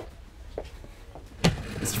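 A large plastic crate set down on a tiled floor: one sharp thud about one and a half seconds in, over a low rumble.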